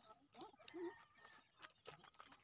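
Very quiet outdoor sound: a faint, brief chicken call a little before the middle, over soft irregular footsteps of sandals on a dirt path.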